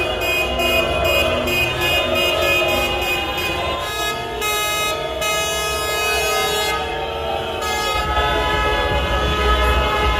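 Many car horns honking together in celebration, held and overlapping tones echoing in a road tunnel.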